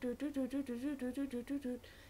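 A woman singing 'light language': a quick run of made-up syllables, about six a second, on a wavering tune that steps up and down, breaking off near the end.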